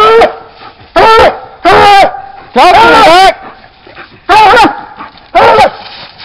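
Coonhound barking treed, standing up against the tree where its quarry is holed up: six loud barks about a second apart, the fourth drawn out longer.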